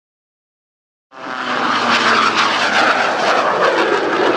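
Engine noise of the Screamin' Sasquatch in flight. It is a Waco Taperwing replica biplane with a 450 hp nine-cylinder radial piston engine and a jet engine mounted underneath. The sound starts suddenly about a second in, after silence, and then runs steady and loud.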